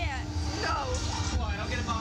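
Two women laughing and squealing in excitement, their voices gliding up and down, over a steady low rumble.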